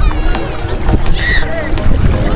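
Wind rumbling on the microphone over shallow sea water, with people's voices around it and a brief high-pitched child's shout a little after one second.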